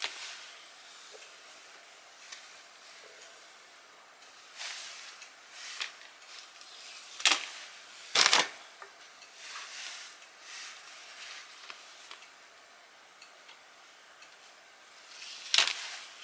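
Bacon frying in a non-stick pan, with a faint steady sizzle and a few sharp crackles, the loudest about seven and eight seconds in.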